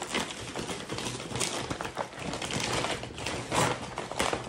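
Brown paper bag crinkling and rustling as hands open it and rummage inside: a run of irregular crackles, louder in a couple of spots.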